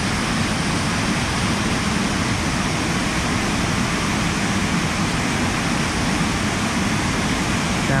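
Steady rushing of a nearby waterfall: an even, unbroken noise.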